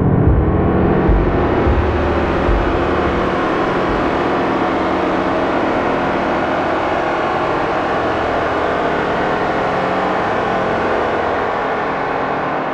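Eurorack modular synthesizer patch built on a Plan B Model 15 oscillator through a Make Noise Erbe-Verb reverb, playing a dense, droning wash. A low pulsing fades out within the first few seconds, leaving a steady, bright, reverberant texture as the knobs are turned.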